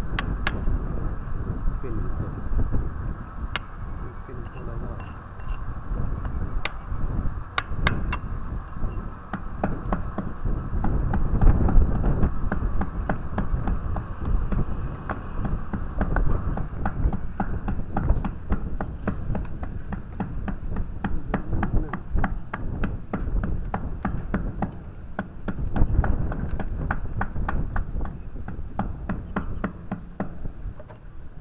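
Hammer striking a hand chisel on masonry: a few separate blows in the first third, then a long run of quick, sharp taps through most of the second half. A low rumble of wind on the microphone runs underneath.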